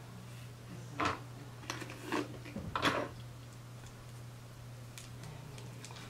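Hands twisting damp hair and handling a small hair clip close to the microphone: four short scratchy rustles between one and three seconds in, over a steady low hum.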